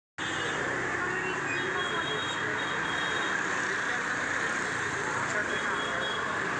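Steady street traffic noise from motor scooters and auto-rickshaws running along the road. It starts just after a brief dropout at the very beginning.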